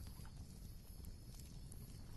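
Faint, steady low rumble of background noise with a few soft, scattered ticks.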